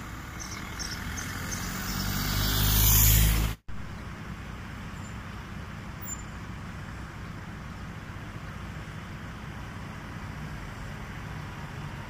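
Road traffic: a car and a lorry passing close by, getting louder over about three seconds and cut off abruptly. A steady, quieter outdoor background of distant traffic follows.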